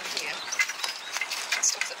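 Small birds chirping now and then, with light clicks and rustles from a metal bellows bee smoker being handled in gloved hands.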